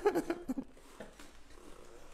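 A man's laugh trailing off in the first half-second, then a quiet room with a few faint knocks from a historic iron hand printing press being handled.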